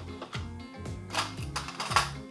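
Coins dropped one at a time into a blue plastic toy cash counter, making a few separate clinks and clicks over background music.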